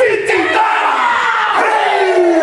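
A group of performers chanting a haka, their voices joined in one long drawn-out shout that slowly falls in pitch.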